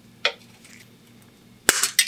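Pliers working the bent metal tabs of a rusty pressed-steel toy truck part during disassembly. One sharp metallic click comes about a quarter second in, then a louder run of quick metal snaps and clicks near the end.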